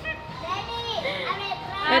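Excited voices of adults and children in a group, talking and calling out over one another, louder near the end.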